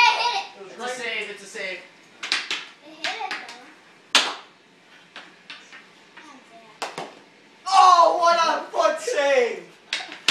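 Voices calling out during a game of floor hockey on a tiled floor, loudest near the end, with a few sharp clacks of hockey sticks and ball on the tile in between.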